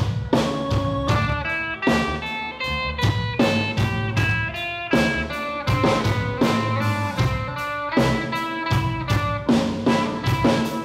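Live rock band playing: electric guitars pick repeating melodic figures of ringing notes over a drum kit keeping a steady beat with kick and snare hits.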